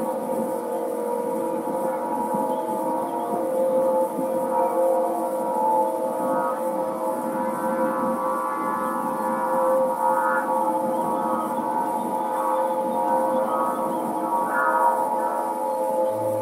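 Aeolian wind harp tuned to A=432 Hz, its strings set sounding by the wind: a sustained drone of several steady tones, with higher overtones swelling in and fading away several times.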